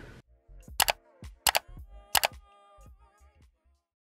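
Three camera shutter clicks, each a quick double click, about two-thirds of a second apart, over soft background music.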